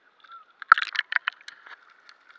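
Water sloshing and crackling against a waterproof camera housing as it dips from the surface to underwater, with a quick run of sharp crackles about halfway through and fainter crackling after.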